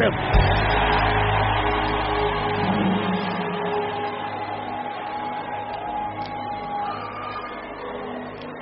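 Background music of sustained held chords, with a deep rumble under them for the first two seconds or so; the sound slowly fades down.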